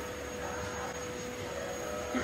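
Steady background room noise: an even hiss with a faint steady hum underneath, and no distinct event.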